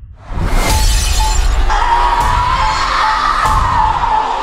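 Horror trailer soundtrack. After a brief hush, a sudden loud crash-like hit comes about a quarter second in, followed by a sustained high drone that swells, with a few sharp hits over it.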